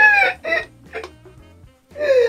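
High-pitched laughter in three bursts, the first loud and the next two shorter and weaker, over faint background music.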